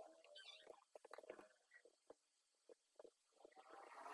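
Near silence with a scatter of faint, irregular keyboard key clicks.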